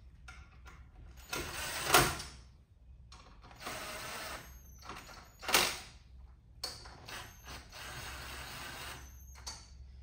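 Cordless drill running bolts down into a supercharger cover plate in several short runs of a second or more each. The runs near two seconds in and near the middle end in a loud peak as a bolt snugs down, before final torquing by hand.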